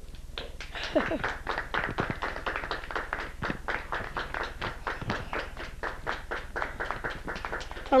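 A small audience applauding, with a few voices mixed in.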